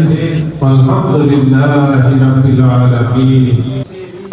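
A man's voice chanting a prayer of supplication (dua) in long, drawn-out melodic phrases, with a short pause about half a second in; it cuts off near the end.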